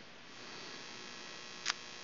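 Faint steady electrical hum and hiss, with a single short click about three quarters of the way through.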